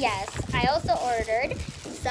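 A young girl's high voice vocalizing without clear words, in about three swooping, sing-song phrases, over light rustling of the plastic packaging she is handling.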